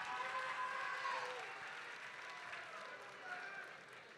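Audience applause mixed with scattered cheers and voices from the crowd, slowly fading.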